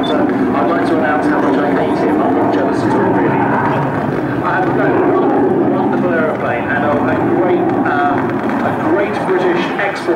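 Hawker Hunter jet in flight, its Rolls-Royce Avon turbojet a steady, loud jet noise, with people's voices heard over it.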